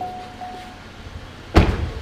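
A 2014 Cadillac XTS's driver's door being shut, one solid slam about one and a half seconds in.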